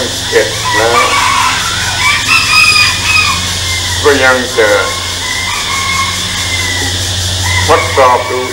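A rooster crowing in the background, a drawn-out high call about two seconds in. Short phrases of a man's voice come and go over a steady low hum.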